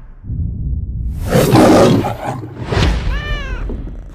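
Animated lion roaring over the Metro-Goldwyn-Mayer logo. A low rumble leads into a loud roar about a second in, then comes a shorter roar and a pitched cry that rises and falls near the end.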